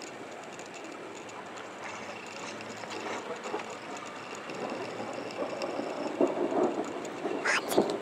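Rolling thunder: a long rumble that grows louder with uneven swells over the second half, with a sharp noise just before the end.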